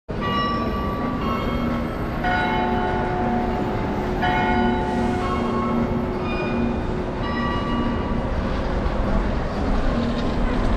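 Bells ringing, a new ringing strike at a different pitch every second or two, over a steady low rumble of street traffic.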